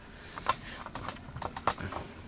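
Keys typed on a computer keyboard: a run of uneven clicks starting about half a second in.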